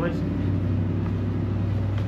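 A steady low hum with a faint hiss, even and unchanging throughout.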